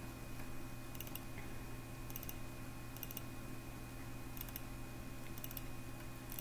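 Faint computer mouse clicks, about six short clusters of double-clicks roughly a second apart, over a steady low electrical hum.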